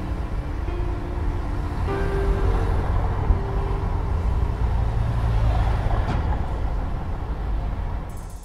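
Steady low rumble of city traffic, with a few soft, held keyboard notes sounding over it in the first half.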